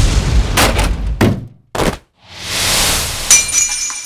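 Sound effects: a loud rumbling noise with a few knocks, then a swelling whoosh that ends in a sharp shattering crash about three seconds in, with high ringing as the pieces settle and fade.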